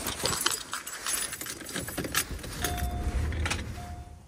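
Rustling and jangling handling noise with a run of small metallic clinks, like a set of keys being jostled.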